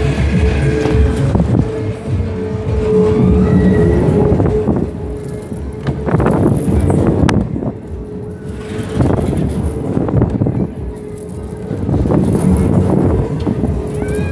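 Loud fairground music over a steady hum, the whole mix swelling and fading every few seconds as the ride moves.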